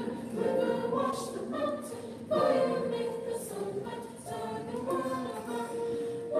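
A small vocal ensemble of students singing a cappella in harmony, unaccompanied, in sung phrases with a louder entry a little over two seconds in.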